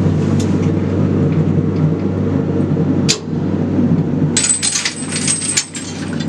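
Steady low rumble of a mine shaft cage travelling in the shaft. About four seconds in, a quick run of metallic clinks and rattles from the cage's gate and chains.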